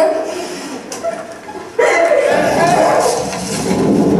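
Voices from a film's soundtrack played back in a large hall. About two seconds in, the sound jumps abruptly louder and denser as the film cuts to a new scene.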